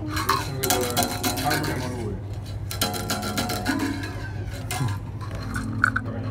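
Untranscribed background talk with a few short held instrument notes in the middle and a steady low hum underneath.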